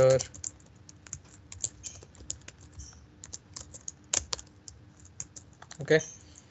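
Typing on a computer keyboard: irregular keystrokes clicking in quick runs, with a couple of louder key hits about four seconds in.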